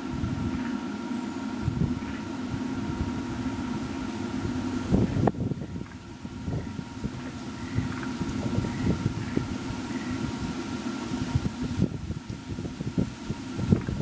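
Wind buffeting the microphone: an uneven low rumble with crackles that swells about five seconds in and again near the end, over a faint steady high whine.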